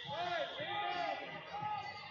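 Men's voices shouting from the side of a wrestling mat in short, high-pitched calls, coaches calling to the wrestlers during the bout.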